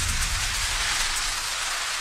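Transition sound effect for a title card: a steady rushing hiss. It opens with a low rumble underneath that fades in the first half second, then the hiss eases off slightly.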